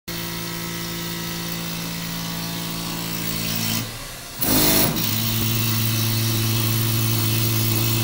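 Benchtop milling machine running steadily while its cutter throws chips off the workpiece, a constant motor hum. A little before halfway it briefly drops away, comes back with a short loud rush, then settles into the same steady hum.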